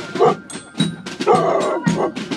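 Marching band's snare and bass drums beating a steady march, about four strokes a second. A short louder call rises over the drums a little past halfway.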